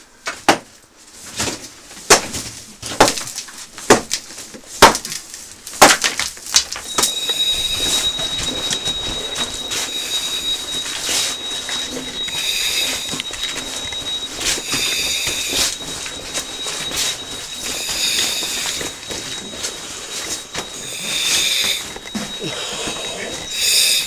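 About six sharp hammer blows on a chisel against brickwork, roughly one a second. From about seven seconds in, a steady high-pitched whistle-like tone sets in, with a hiss every two to three seconds.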